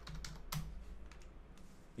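Computer keyboard being typed on: a handful of quiet keystrokes as a short command is entered, over a low steady hum.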